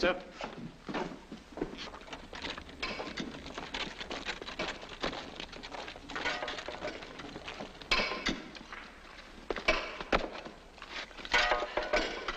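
Scattered knocks, thuds and clinks of soldiers moving in with their kit, under indistinct men's voices.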